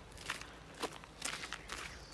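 A person's footsteps while walking, about four steps at an even pace of roughly two a second, quiet.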